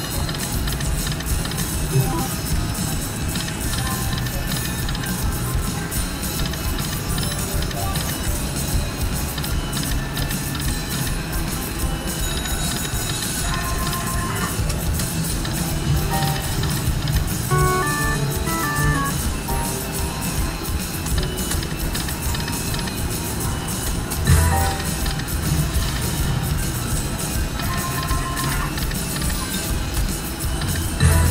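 Electronic slot-machine jingles and short stepped melodies as the reels spin, over the steady din of a busy casino floor.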